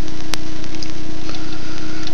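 Steady, loud hiss with a constant low hum, with one sharp click about a third of a second in.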